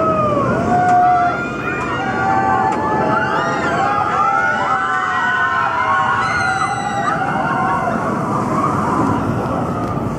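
Steel flying roller coaster running along its track, a continuous rumbling roar, with its riders screaming throughout in many overlapping wavering voices.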